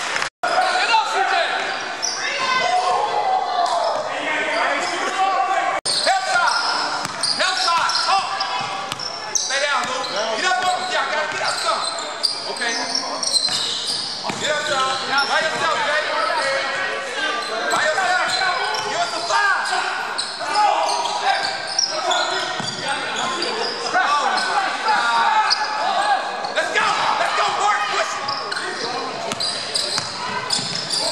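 Basketball being dribbled and bounced on a hardwood gym floor during a game, with players' indistinct shouts and calls. Everything echoes in a large hall, and the sound cuts out for an instant just after the start.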